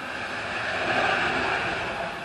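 A vehicle passing on a wet road: a steady tyre hiss that swells about a second in and then slowly eases off.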